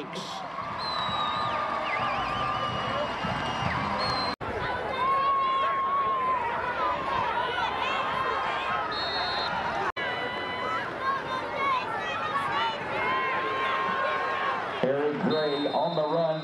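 Football stadium crowd noise: many voices shouting and cheering at once. The sound drops out sharply twice, where the footage is cut.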